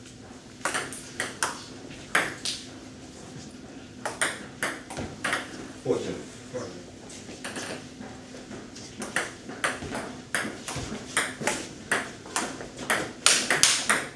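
Table tennis ball clicking off the table and paddles in rallies. A short exchange comes in the first couple of seconds, then a longer rally starts about four seconds in and grows quicker and louder near the end.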